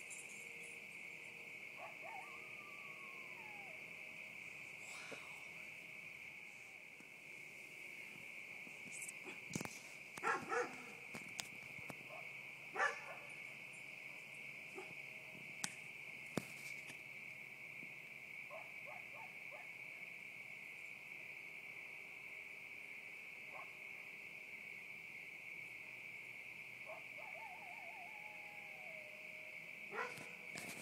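Coyotes calling in the distance: a few falling, howl-like calls near the start and near the end, and a cluster of sharp yips about ten to thirteen seconds in, which are the loudest sounds. Under them runs a steady high chorus of night insects.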